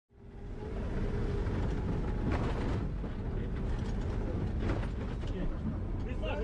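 Cabin noise inside a moving Humvee: a steady low rumble of the vehicle driving, with a few rattles and knocks of the cabin and faint voices of the crew.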